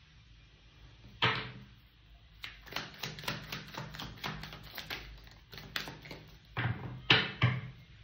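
A tarot deck handled and shuffled on a wooden table. There is a sharp knock about a second in, then a quick run of card clicks for about three seconds, then a few more knocks near the end.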